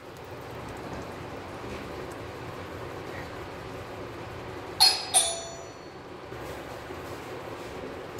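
Ghee melting in a hot non-stick kadhai with a soft, steady sizzle. Two sharp ringing clinks of a utensil come close together about five seconds in.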